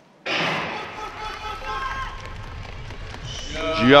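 A starting gun fires for a sprint start about a third of a second in, a sharp bang echoing through a large indoor athletics hall. The sprinters' running footsteps and voices in the hall follow, and a man's commentary begins near the end.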